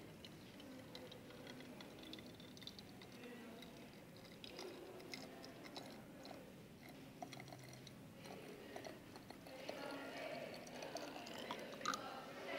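Faint handling sounds at a table: scattered small clicks and knocks over a low room murmur, busier and a little louder in the last couple of seconds.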